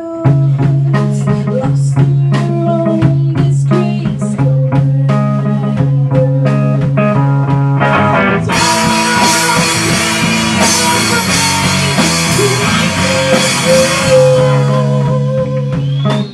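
Live rock band playing an instrumental passage on distorted electric guitar, bass and drum kit. About eight seconds in, a bright cymbal wash comes in and fills out the sound, easing off again near the end.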